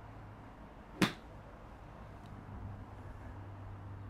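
A golf club striking a ball off an artificial turf mat on a short pitch shot: one sharp click about a second in. The contact is clean and well struck.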